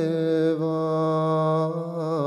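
A man singing one long held note of a Bosnian sevdalinka, steady in pitch.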